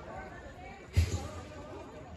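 Distant voices chattering across the water, with one sudden low thump about a second in.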